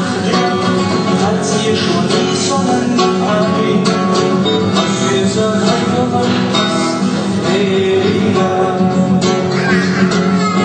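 Acoustic guitar playing music at a steady level.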